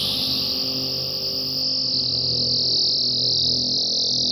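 Electronic computer music: a dense, steady band of high, grainy noise over faint low sustained tones, swelling slightly.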